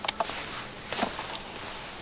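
Handheld camera recording of someone walking through a room: steady hiss with scattered clicks and knocks from footsteps and handling of the camera, the strongest at the start and about a second in.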